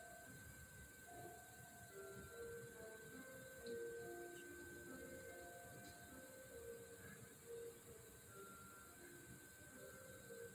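Faint all-female choir singing held notes that change pitch every second or so, played through a television's speakers. A steady high tone sounds underneath throughout.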